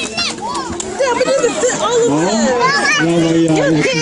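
Several children's voices talking and calling out over one another, high-pitched, with no one voice clear.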